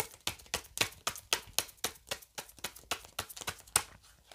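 A deck of tarot cards being shuffled by hand: a quick, regular run of crisp card slaps, about five a second.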